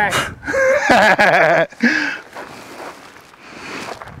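A man blowing hard on the flames still burning on a ballistic-gel dummy head, with short voiced sounds between the puffs; the breathy hiss grows fainter over the last two seconds.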